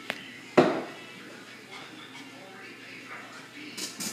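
Wooden spoon stirring ground meat and onions in a pan, with a light click at the start and a sharper knock of the spoon against the pan about half a second in, then quiet scraping.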